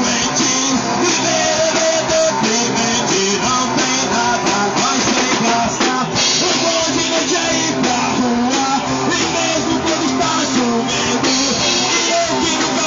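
Rock band playing live and loud: a singer over electric guitars, bass guitar and a drum kit, all running steadily.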